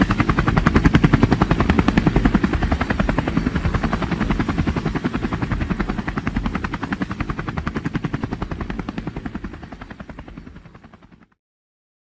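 Helicopter rotor sound effect: a steady, rapid, even chopping that fades away over the last few seconds and stops just before the end.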